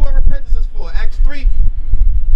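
A man's voice speaking through a microphone, over a steady low rumble.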